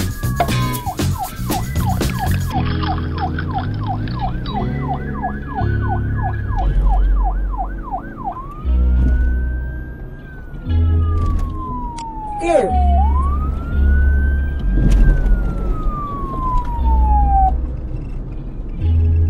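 Police siren sound effect over background music: a fast yelping warble, about two cycles a second, for most of the first half. It then changes to two slow wails, each rising and then falling away.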